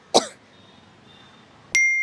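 A short cough just after the start. Near the end a loud ding sound effect cuts in over dead silence: one clear bell-like tone held steady.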